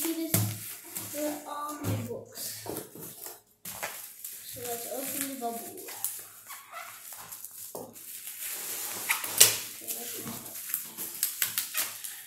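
Plastic shrink wrap on a boxed book set crinkling and crackling as it is handled and pressed, loudest in bursts in the second half, with short wordless voice sounds in between.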